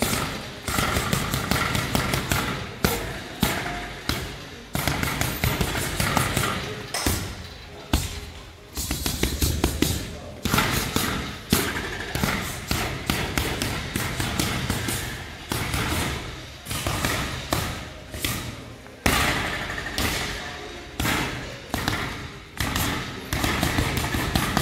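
Bare fists punching the padded, spring-mounted arms of a SparBar/IronFist striking machine in fast flurries of thuds, several a second, broken by short pauses.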